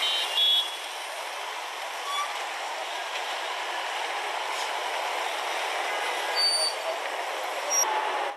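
Steady street noise of a jammed highway with trucks and buses, thin-sounding with little low end, with a few brief high-pitched tones near the start and toward the end.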